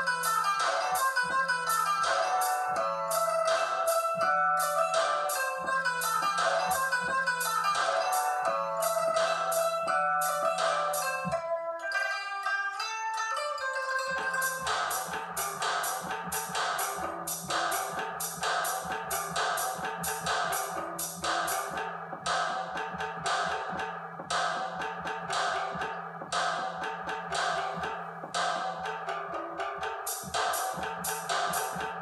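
Music played live by tapping pads on a tablet drum-pad app (Drums Pads 24): fast, steady percussion hits under a looping melodic line. About eleven seconds in, the drums drop out for about three seconds, leaving the melody alone, then come back in with a fuller sound.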